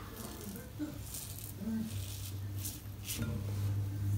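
Double-edge safety razor scraping stubble off the lathered neck, in several short strokes about two a second.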